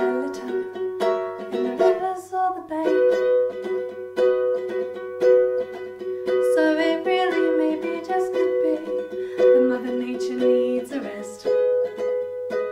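A ukulele with a capo being strummed in steady chords, with a woman singing a melody over it.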